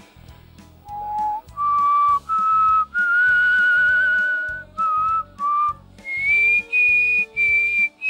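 A man whistling a tune by mouth: a string of clear notes starting about a second in, climbing to a long held note in the middle, then gliding up to higher notes near the end.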